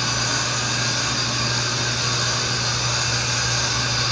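Shop machinery running steadily: an even whirring noise over a constant low motor hum.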